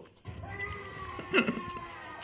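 A cat gives one short meow about a second and a half in.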